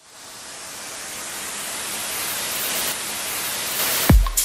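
White-noise riser, a hiss that swells steadily louder, used as an editing transition effect.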